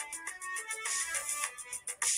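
Instrumental pop backing track playing between sung lines: short synth notes over a light beat with evenly repeating high ticks.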